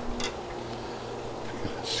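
A pause between words: steady low background hum, with one brief faint click just after the start.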